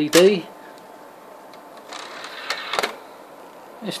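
Pioneer BDR-207DBK internal Blu-ray drive taking in a disc: about two seconds in, a short mechanical whirr of the loading mechanism, lasting over a second, with two quick clicks in the middle.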